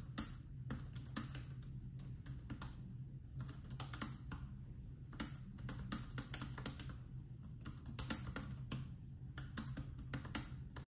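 Typing on a compact Bluetooth keyboard with round, low-profile keys: quick, irregular keystroke clicks in runs with short pauses, over a faint steady low hum.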